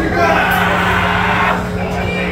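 A man's shouted voice through a club PA system over a steady low drone from the stage.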